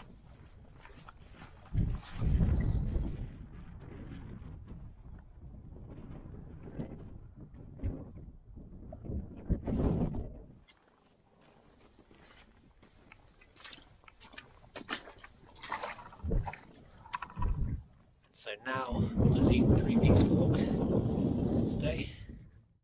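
Wind buffeting the camera microphone in gusts, loudest in the first half and again near the end. In the quieter middle stretch come sharp taps of trekking poles and footsteps on stone.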